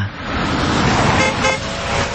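Street traffic noise with a short car horn toot a little over a second in.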